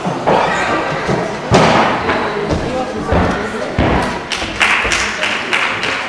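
Dull thuds of a young gymnast's feet and body landing on the gymnastics floor during a floor routine, a string of impacts with several in quick succession near the end, over voices in the hall.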